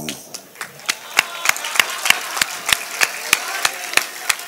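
Audience clapping together in a steady beat, about three claps a second, starting about a second in.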